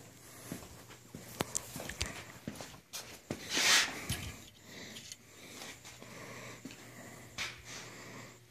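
Scattered light clicks and knocks of handling and footsteps over a faint steady hum, with a short breathy sniff-like noise about three and a half seconds in.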